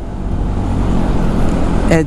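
Honda ADV 150 scooter, bored up to 62 mm on its stock exhaust, running steadily under way in traffic. Wind is rushing over the camera microphone.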